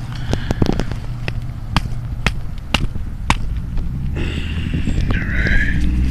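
Pomegranate rind cracking and tearing as the fruit is pulled open by hand: a run of sharp separate snaps and crackles over the first few seconds. A steady low rumble runs underneath and grows stronger near the end.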